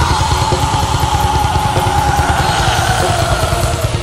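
Black metal recording: a long held, piercing tone slowly falling in pitch over dense, fast drumming and distorted band noise.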